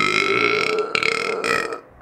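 A man's long burp, held at a steady pitch for nearly two seconds and stopping shortly before the end.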